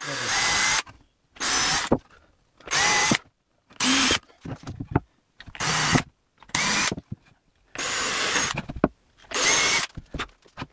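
Cordless drill boring pilot holes into wooden door boards: eight short runs of the motor, each under a second, each quickly spinning up, with brief pauses between.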